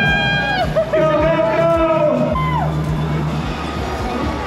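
Loud music with a steady kick-drum beat, mixed with a crowd of supporters shouting and cheering for a finishing athlete.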